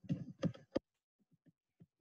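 A few short, soft clicks in the first second, then near silence.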